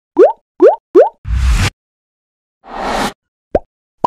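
Cartoon-style animation sound effects: three quick rising 'bloop' pops, then a short burst of noise with a low thud, a swelling whoosh, and a brief blip near the end.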